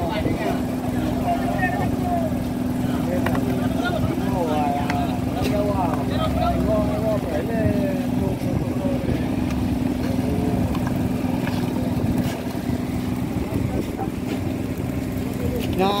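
A fishing boat's engine running with a steady, even hum, with crew voices chattering over it for the first half or so.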